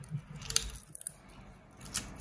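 Kitchen shears snipping through a raw whole chicken along its back, with a few sharp snips through bone and skin.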